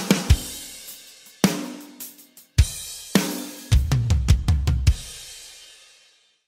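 Drum kit playing: spaced heavy hits with ringing cymbals, then a quick run of low drum hits about four seconds in. The last hits ring out and fade just before the end.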